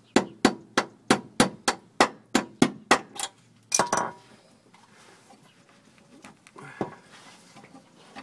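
Hammer striking a steel punch to drive out a leaf spring mounting bolt: ringing metal-on-metal blows, about three a second for some three seconds. A louder clatter follows as the hammer is put down on the concrete floor, then faint clinks of handling.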